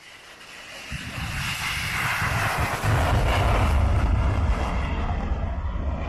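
Fighter jet's engines taking off and climbing away, the jet noise swelling from the start and loudest around the middle, with wind buffeting the microphone.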